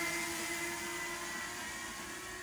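DJI Mini 2 quadcopter's propellers whining steadily as it flies away, the sound slowly fading.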